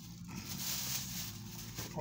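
Thin plastic shopping bag rustling as it is handled and lifted, with a steady low hum underneath.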